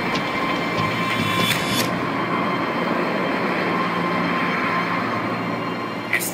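Steady city street noise: a continuous hiss and hum of traffic with no clear single event.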